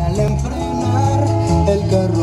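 Music with guitar. A different song comes in right at the start, replacing the heavier, bass-driven track just before.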